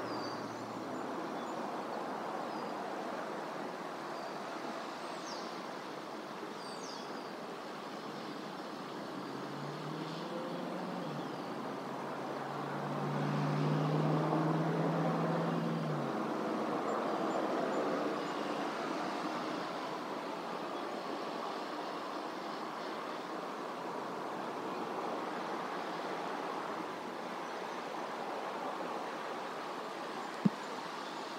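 Steady outdoor background noise with a low hum that swells about halfway through and fades again, like a vehicle going by, and a few faint high bird chirps early on.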